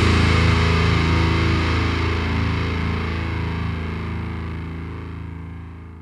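The last distorted guitar chord of a deathcore song ringing out, its low notes holding and slowly fading away.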